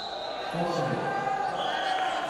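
Voices calling out in a large sports hall during a wrestling bout, with a short, steady high-pitched tone near the end.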